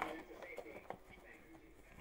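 Faint handling noises from a tablet's cords and packaging being handled: a few light clicks, one of them about a second in.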